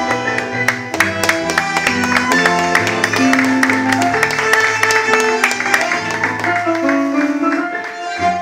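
Live tango orchestra playing an instrumental passage, with no singing. Through the first five seconds or so it plays a run of sharp, clipped accents, then settles into long held string notes near the end.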